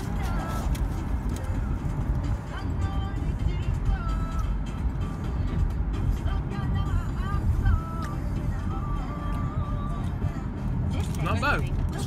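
Low rumble of a car heard from inside the cabin, with music playing in the car over it: short, steady notes come and go above the rumble.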